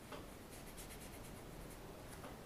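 Faint swishing and scratching of a thin paintbrush working oil paint onto the painting surface: a soft tap at the start, then a quick run of light strokes.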